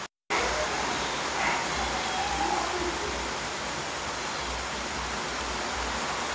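A brief cut to dead silence, then steady, even hiss of background noise.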